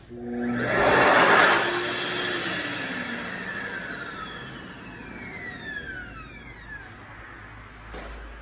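Excel Xlerator HEPA hand dryer set off by a hand beneath it. The blower comes on and runs loudly for about a second, then shuts off, and its motor winds down with a whine falling in pitch over several seconds.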